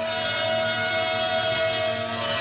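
Film score music holding one sustained note with many overtones, steady and unbroken through the moment.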